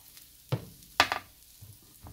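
Two short knocks about half a second apart, the first with a low thump, from a metal baking tray of roasted Brussels sprouts being handled on a kitchen counter.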